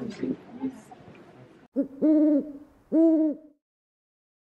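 Faint murmur of people in a room cuts off abruptly, followed by two owl-like hoots, each about half a second long and about a second apart, with a short blip just before the first.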